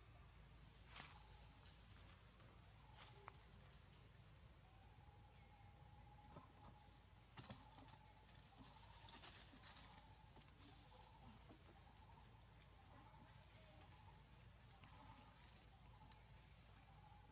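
Near silence: faint forest ambience with a low steady hum, scattered faint bird chirps and a few soft clicks. The clearest chirps come about three and a half seconds in and near the end.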